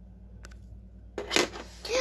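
Low steady hum with a small click, then, a little over a second in, a burst of rustling handling noise as the recording phone or tablet is picked up and moved. A girl's voice starts at the very end.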